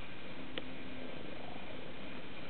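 Domestic cat purring steadily, close to the microphone, with a single small click about half a second in.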